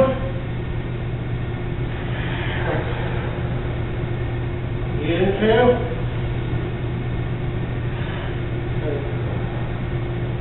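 Steady low room hum, with a voice speaking briefly about five seconds in and fainter traces of voice near two and a half and nine seconds.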